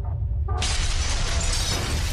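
Shattering, crashing sound effect in an animated logo sting. It breaks in suddenly about half a second in over a steady deep rumble and keeps crackling on.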